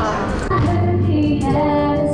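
A woman sings into a microphone over backing music, holding a long note in the second half.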